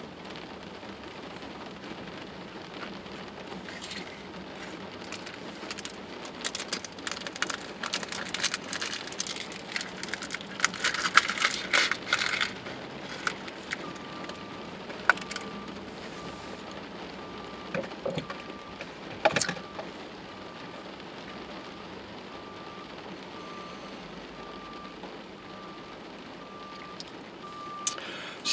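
Steady rain on a parked car, heard from inside the cabin. About six seconds in comes a stretch of crinkling and crackling from a plastic snack bag being handled and opened. In the second half a faint beep repeats about once a second.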